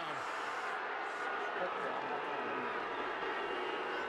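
Stadium crowd cheering steadily after a touchdown.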